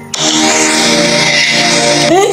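A woman's voice holding one long sung note at a steady pitch.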